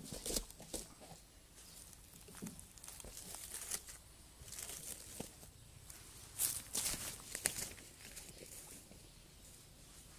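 Scattered rustling and crackling of leaves and dry undergrowth close to the microphone, loudest in a cluster of crackles about six to seven and a half seconds in, then fading to a faint outdoor background.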